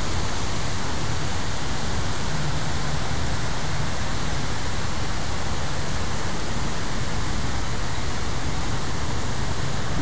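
Steady rush of floodwater from a river that has overflowed into a parking lot, an even noise with a low rumble underneath.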